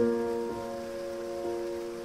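Slow, gentle solo piano music: a chord struck right at the start, then softer notes about half a second and a second and a half in, each left to ring and fade.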